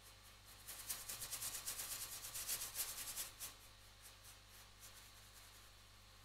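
Paintbrush scrubbing oil paint on a painting board in rapid back-and-forth strokes, blending the black background. It starts about a second in, runs until just past the middle, then thins to a few faint strokes.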